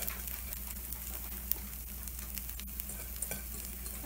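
Takoyaki batter sizzling in the wells of a hot takoyaki plate: a steady frying hiss with scattered small crackles and one sharper pop about a second and a half in.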